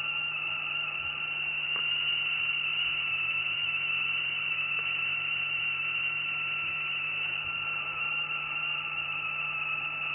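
Homemade spark-gap system running with a steady, really high-pitched whine over a low hum and a hiss.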